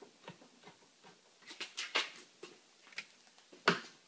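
Light clicks and ticks of a hand screwdriver turning a small screw as a tail light mounting screw is tightened, with a quick run of clicks about halfway through and one sharper click near the end.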